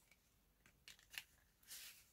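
Faint handling of paper and laminated cards on a notebook page: a few light clicks about a second in, then a short rustle near the end.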